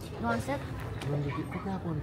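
Indistinct voices talking, with nothing else standing out.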